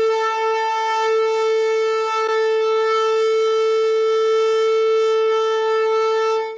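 Shofar sounded in one long, unbroken blast held at a single steady pitch.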